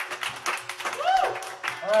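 A small audience clapping, fast and irregular, just after a loud song ends, with a short shout or two mixed in.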